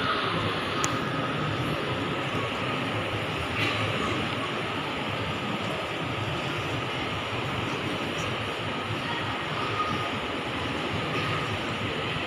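Steady room noise of a crowded mosque hall: an even, indistinct hum and murmur with no clear voices.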